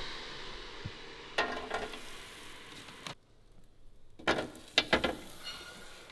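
Frozen cauliflower-breaded chicken tenders being handled into a Ninja air fryer basket: a few light knocks and rustles over a steady hiss, which cuts out for about a second midway.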